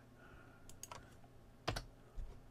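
Computer keyboard keys clicking: a few faint clicks about a second in, then a louder one near the end.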